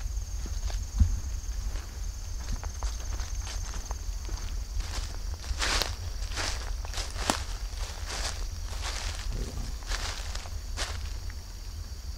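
Footsteps through grass and dry fallen leaves, crunching in an uneven series that is thickest in the middle, over a steady high insect drone.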